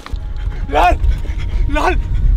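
A man's voice calls out twice, about a second apart, over a steady low rumble.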